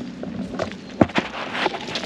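Irregular knocks and rustles from a GoPro being handled and carried by a toddler, with footsteps on a leaf-litter woodland path.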